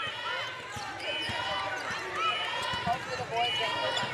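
A basketball being dribbled and sneakers squeaking on a hardwood court during live play, with many short squeaks overlapping throughout.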